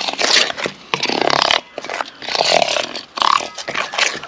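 A metal spoon scraping and stirring dry ground spice mix against the sides of a stainless steel bowl, in a string of rough, grating strokes.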